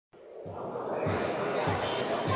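Sports-hall crowd chatter fading in, with a low thump repeating evenly about every two-thirds of a second.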